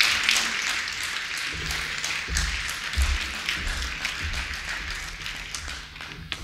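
Audience applauding: a dense patter of many hands clapping that slowly dies down.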